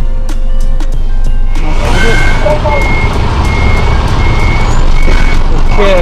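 A tractor-trailer's reversing alarm beeping steadily, a high beep about every 0.7 s, starting about a second and a half in over the truck's engine. Under it a rushing hiss as the trailer's raised lift axle is lowered onto the ground.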